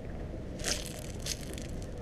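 Footsteps crunching and scuffing on gritty sandstone and gravel, several short crunches starting about half a second in, over a steady low rumble.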